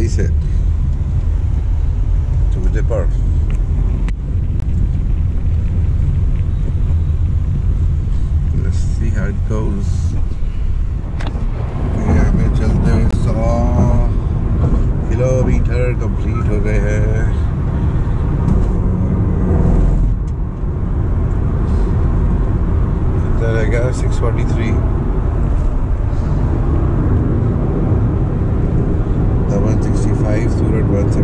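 Steady low road and tyre rumble inside the cabin of a moving Honda City e:HEV hybrid sedan, with a person's voice heard now and then over it.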